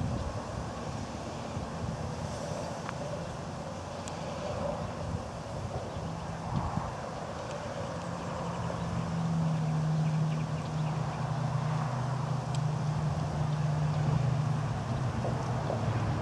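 Wind on the microphone over road traffic, with a steady low engine hum coming in about eight seconds in and fading near the end.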